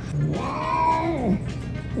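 A long-haired cat giving one long drawn-out meow that holds its pitch and then falls away, with a second call starting right at the end. Background music runs underneath.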